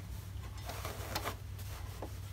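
Quilt fabric being handled and shifted on a sewing machine's bed, with a few faint light clicks over a steady low hum.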